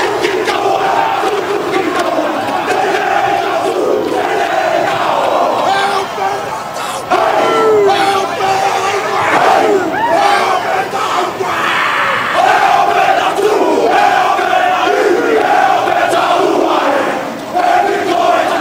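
Chiefs rugby players performing a haka: many men's voices chanting and shouting in unison in loud, held phrases, over crowd noise.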